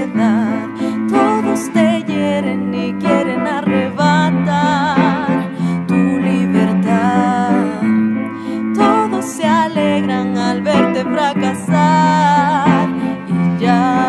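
Blues ballad performed live: a woman sings sustained, wavering notes with vibrato, backed by a band.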